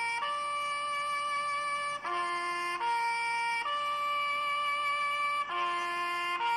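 Harmonica played slowly, each note held: a rising three-note figure from a low note to a higher one to a longest-held top note, like a bugle call, repeated about every three and a half seconds.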